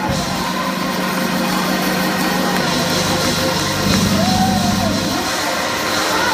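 Live church worship music: sustained low chords held under the room, shifting to new chords about two and a half seconds in and again near four seconds, with voices singing and calling out over them.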